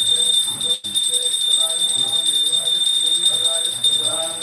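Continuous rapid ringing of bells, a steady high jingling, with voices murmuring underneath; the sound cuts out for an instant just under a second in.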